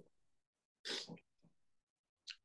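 A short, sharp breath about a second in, with a much fainter one half a second later; otherwise near silence.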